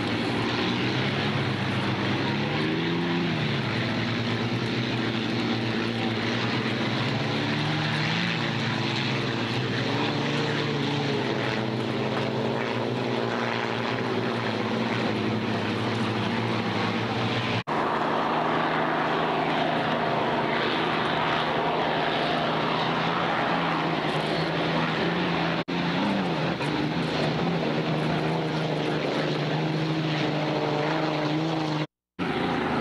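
Unlimited hydroplane racing boats at full speed, their engines sounding like aircraft, with a loud wash of spray; the engine pitch rises and falls as boats pass. The sound breaks off abruptly twice, about two-thirds of the way through and again near the end, as the footage cuts.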